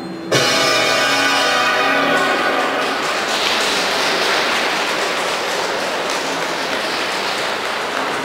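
Program music ends on a loud final chord that rings out over the next few seconds, and audience applause follows, steady through the rest.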